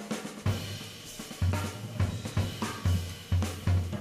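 Jazz drum kit played live with sticks: strokes with cymbal wash over low drum hits that come roughly twice a second.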